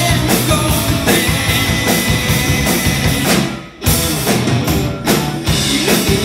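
Live rock band playing loud with drum kit, electric guitars and bass. A little past halfway the music stops abruptly for a moment, then the full band comes back in.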